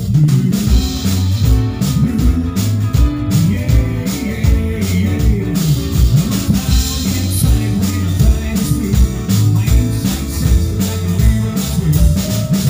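Live rock and roll band playing, with electric guitar, bass guitar and drum kit keeping a steady beat.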